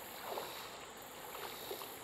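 Faint water sloshing as a person wades through a creek, with a steady high insect buzz behind it.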